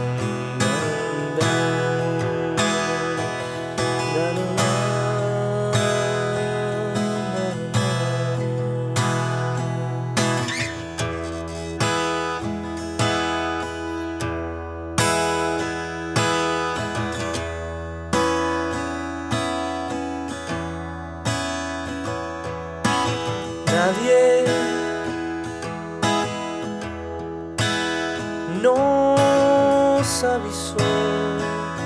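Strummed acoustic guitar in a rock-blues song's instrumental passage, with regular chord strokes and a melody line of sliding, bent notes over them that stands out near the end.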